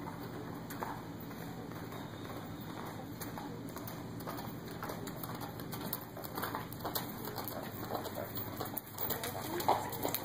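Steady low hum of the covered arena, with scattered light ticks. From about six seconds in, a horse's soft, irregular hoofbeats on the arena footing grow louder as it approaches.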